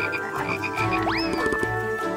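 Cartoon frog sound effects: croaks repeating about five times a second, with a quick rising glide about a second in, over steady held tones.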